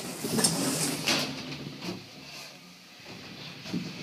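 Elevator doors sliding closed, with a few light knocks in the first couple of seconds.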